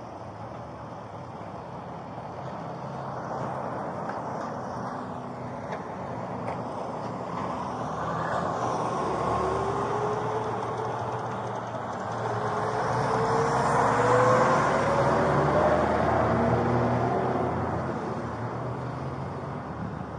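Motor vehicle engine noise building slowly to a peak about two-thirds of the way through and then fading, with a faint rising engine tone at its loudest.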